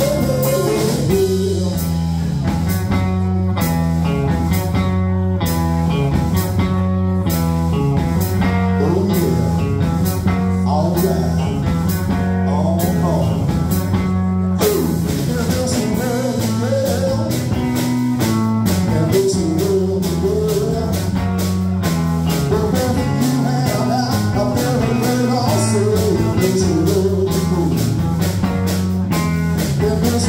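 A live band playing amplified rock music: electric guitar, electric bass and a drum kit, with a repeating bass line under a steady drumbeat.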